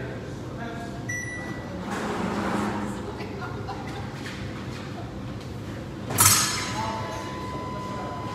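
Epee bout in a large hall: fencers' footwork and light knocks, then a sudden loud hit about six seconds in, followed by a steady electronic beep held to the end, the scoring machine registering a touch.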